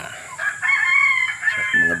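A rooster crowing once, a single long call lasting about a second and a half.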